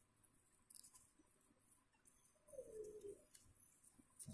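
Near silence: room tone, with a faint brief falling tone about two and a half seconds in.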